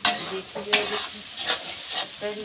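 Metal spatula stirring and scraping thick onion-masala gravy frying in a metal kadhai, the masala sizzling. There are three sharp scrapes about three-quarters of a second apart. The masala is being fried down until it is done.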